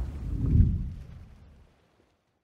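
Deep rumbling boom of a logo-reveal sound effect. It swells once about half a second in, then fades away to silence near the end.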